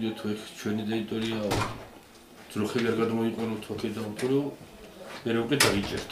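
A man speaking in a small room, broken by two sharp knocks or clicks, one about one and a half seconds in and one near the end.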